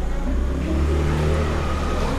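A low, steady engine hum, a little stronger in the middle.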